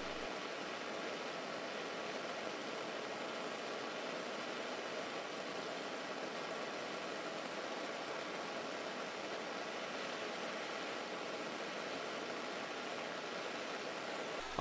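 Small gas torch burning with a steady hiss, its flame heating a steel wire ring to red heat.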